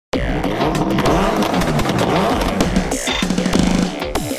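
Music for a car-show intro with engine-revving sound effects laid over it: engine notes sweep up and down in pitch, with sharp hits, and a steady engine note is held near the end.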